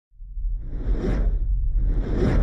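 Cinematic intro sound effect: a deep, steady rumble fades in from silence, with a whoosh that swells and fades about a second in and a second whoosh building near the end.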